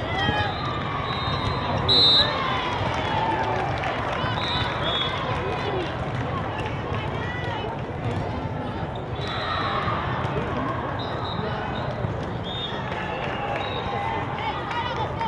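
Indoor volleyball hall ambience: overlapping voices of players and spectators in a large echoing hall, with frequent short high squeaks of sneakers on the court tiles. A short, loud high-pitched tone sounds about two seconds in.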